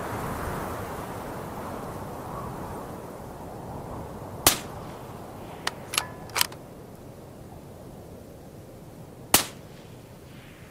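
Two suppressed shots from a Q Fix bolt-action rifle, about five seconds apart, with three quick metallic clicks of the bolt being cycled between them, over a steady hiss.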